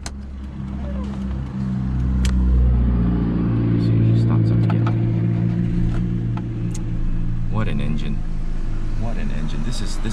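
Toyota Corona's 2.0-litre 3S-FE four-cylinder engine running with the car stationary, heard from the driver's seat. About two to three seconds in, its revs and loudness rise a little, then hold at a steady note.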